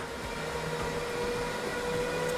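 HPE ProLiant DL560 Gen10 rack server's cooling fans running at high speed under full CPU load: a steady rush of air with a couple of steady whining tones in it.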